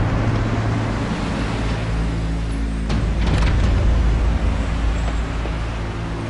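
Car engine running as an SUV drives up a city street, with surrounding traffic noise and a few sharp clicks about halfway through.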